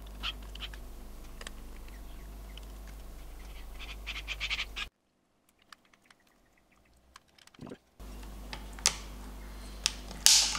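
Light clicks and taps of a small hex key and tiny screws being worked into a plastic drone body, with a quick cluster of clicks a little before halfway, over a steady low hum. The hum cuts out for about three seconds in the middle, leaving only a few faint clicks and a short thump.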